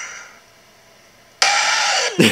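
A soft, breathy yawn trails off, and after a short hush a girl lets out a sudden, exaggerated yawn that is way too loud.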